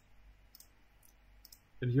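Several faint computer mouse clicks, short and sharp, spread over the first second and a half as dropdown menus are opened in a web page.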